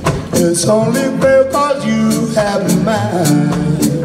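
Live soul band music: electric guitar, upright bass, keyboard, drums and saxophones playing a song with a steady drum beat and a melody line over it.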